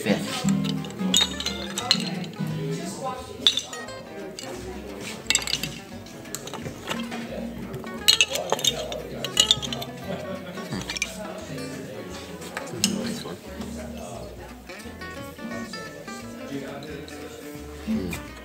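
Wooden rosewood guitar bridges and blanks clicking and knocking against each other as a hand sorts through them in a case, in scattered clusters of sharp clinks. Background music with a steady bass line runs underneath.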